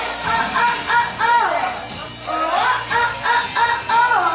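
A girl singing into a microphone over a pop backing track, heard through the hall's speakers: a run of short, repeated wordless sung notes, about three or four a second, with pitch glides between the groups.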